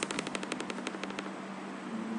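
A fast, even run of light clicks, about a dozen a second, that fades and stops a little past halfway, over a faint steady hum.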